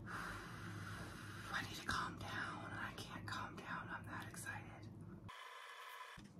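A woman whispering softly, with a faint knock about two seconds in.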